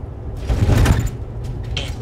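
Steady low engine and road rumble inside a Jeep's cabin on the move, with a brief louder burst of noise about half a second in that fades out by about a second.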